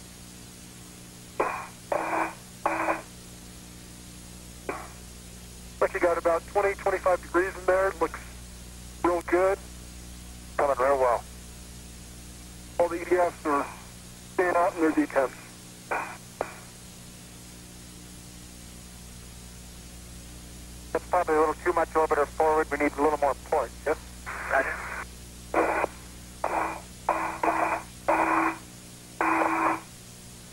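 Voices over a narrow-band space-to-ground radio loop, in short clipped bursts with pauses, over a constant hiss and a steady low hum.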